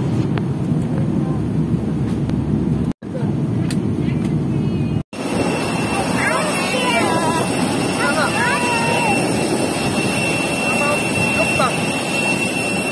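Jet aircraft noise on an airport apron: a steady high whine over a rumble, with voices talking over it. Before that comes a low steady rumble, cut off twice by brief edits in the first half.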